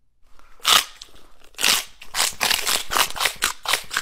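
Mouthful of blue rolled tortilla chips (Takis Blue Heat) being bitten and chewed. Two loud crunches come about a second apart, then quick, steady crunching chews fill the rest.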